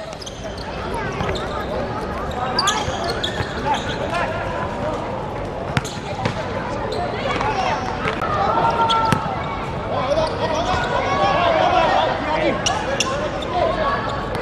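Football being kicked on a hard outdoor court, a few sharp knocks spread through, under men's voices calling out across the pitch that grow louder in the second half.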